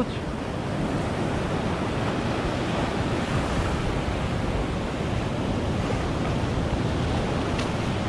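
Ocean surf washing over the shallows of a beach, a steady, even wash of breaking foam.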